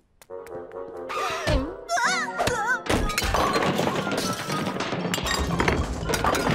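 Cartoon soundtrack: music with a dense clatter of knocks, crashes and breaking sounds from about three seconds in.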